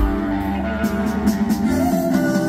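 Live psychedelic rock band playing, heard through the venue PA from the crowd: electric guitars over bass, with kick drum thuds and cymbal hits.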